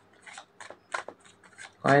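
A few faint, short clicks and rustles spread through a quiet pause, then a woman's voice starts speaking near the end.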